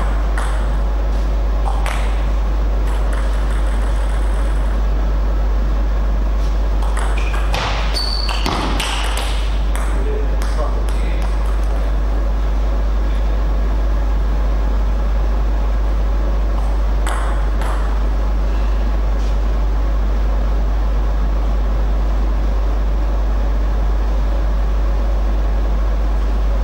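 Table tennis ball clicking off paddles and table in rallies: a few hits early, a quick run of hits about seven to nine seconds in, and more around seventeen seconds. Underneath is a constant low electrical hum.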